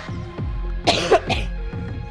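Background workout music with a steady beat; about a second in, a person gives a quick double cough.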